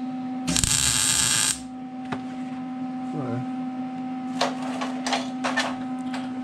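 MIG welder laying a tack weld on sheet steel: about a second of dense crackling buzz starting half a second in, then a few short tack bursts near the end, over a steady low hum.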